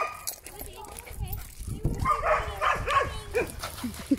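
A dog giving a quick run of short, high yips and whines that bend up and down in pitch, starting about two seconds in.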